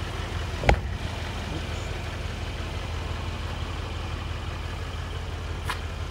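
Mercedes-AMG C63 S's 4.0-litre biturbo V8 idling with a steady low hum. A single sharp knock comes a little under a second in.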